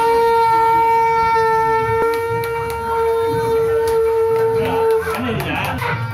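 Conch shells being blown: one long, steady horn-like note held for about five seconds, which breaks off near the end.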